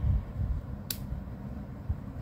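Low steady background rumble with one sharp click about a second in, from tarot cards being handled on the table.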